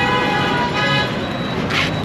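Busy street traffic with a vehicle horn held steadily, stopping about a second in. Short hissing noises follow near the end.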